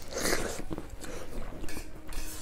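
A handful of rice mixed with nettle soup taken into the mouth from the fingers and chewed close to the microphone, loudest in the first half second, then several shorter, softer chewing sounds.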